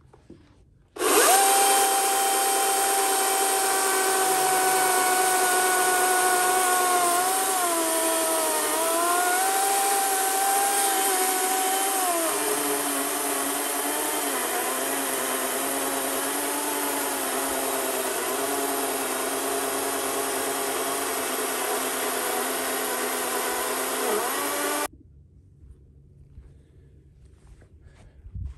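DeWalt battery-powered chainsaw running and cutting into a large log: a steady electric whine that dips in pitch as the chain loads up in the cut, settling lower about twelve seconds in, then stopping suddenly a few seconds before the end.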